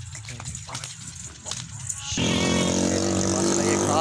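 A motor engine runs steadily, suddenly louder from about two seconds in. Before it, only light scattered clicks are heard.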